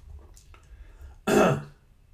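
A man clears his throat once, about a second and a quarter in.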